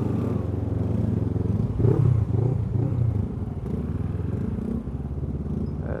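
Honda CBF500 parallel-twin motorcycle engine running as the bike moves off through traffic, with a few short rises and falls in revs about two seconds in.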